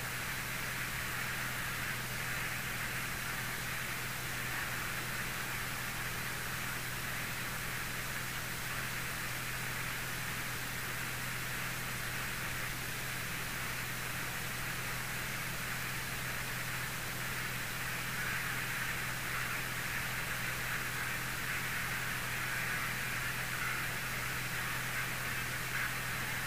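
Steady in-flight cockpit noise of a Mooney M20E, heard through the intercom/radio audio feed: an even hiss with a low steady hum beneath, unchanging throughout.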